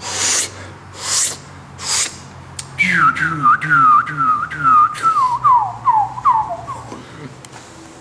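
Beatboxer's mouth sounds: three short breathy bursts of noise, then about four seconds of quick whistled notes, each sliding down in pitch, about three a second, the run drifting gradually lower.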